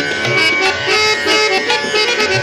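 Harmonium playing a Hindustani classical melody in raag Bhairavi, its reeds holding and stepping between notes, with tabla strokes and low bayan thuds keeping the rhythm.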